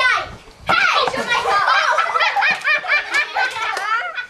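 Several children's voices talking and calling out over one another in high-pitched, excited chatter, starting a little under a second in.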